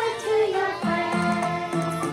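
Young children singing a song together over music, with a falling glide near the start and then held notes over a bass line.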